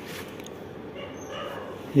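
Electric fan heater running on its newly fitted blower motor: a low, steady rush of air, with a few faint high tones around the middle.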